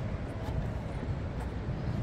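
Steady low rumble on the open deck of a moving river cruise boat: wind buffeting the microphone mixed with the boat's engine, with faint passenger chatter underneath.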